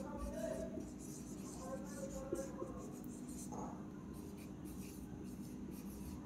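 Marker pen writing on a whiteboard: faint, short scratchy strokes with the odd brief squeak as a word is written out.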